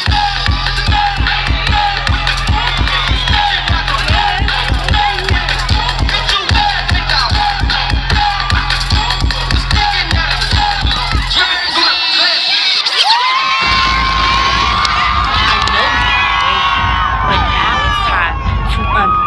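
Dance music with a heavy, steady bass beat, and a crowd cheering and shouting over it. The bass drops out for about two seconds past the middle, then comes back, and a long high note is held near the end.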